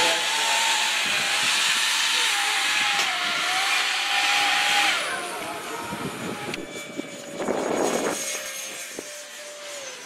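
Electric ducted fans of a large scale trijet airliner model running on the ground: a loud rushing hiss with a steady, slightly wavering whine. About five seconds in it cuts to a fainter ducted-fan jet in flight, a steady whine with a short rush of noise near eight seconds.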